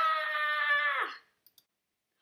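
A woman's voice acting out a cartoon character's wail: one long, high cry held at a steady pitch for a little over a second, then cut off, followed by two faint clicks.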